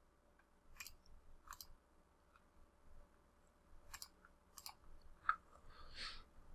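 Faint computer mouse clicks, a few single clicks and quick pairs spread over the few seconds.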